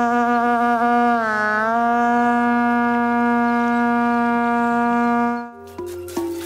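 A long held note on an ice horn, steady in pitch apart from a brief dip and rise about a second in. It stops near the end, and a few short struck or plucked notes begin.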